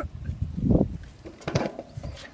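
Bumps, knocks and handling noise on a phone's microphone as a person climbs up onto a large tractor one-handed. The loudest knock comes a little under a second in, with a short vocal sound of effort about one and a half seconds in.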